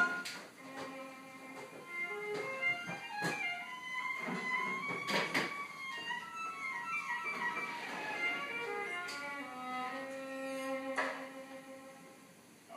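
Violin playing a melody of held notes, with a few sharp knocks or clicks along the way.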